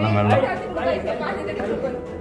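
Speech only: several people's voices chattering inside a rock-cut cave.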